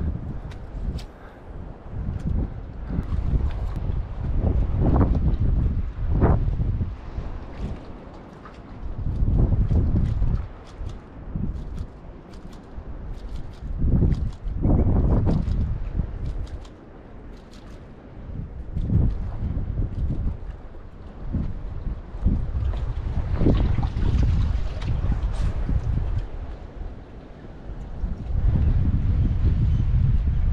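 Gusty wind buffeting the microphone: a low rumble that swells and drops every few seconds.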